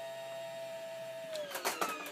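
RV slide-out motor whining steadily while running the kitchen slide in, its pitch falling about a second and a half in as the motor slows at the end of travel, followed by a few short clicks.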